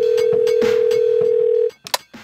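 A phone call's ringing tone: one long, steady, loud beep that stops shortly before the end. A short click follows as the call connects, over background music with a beat.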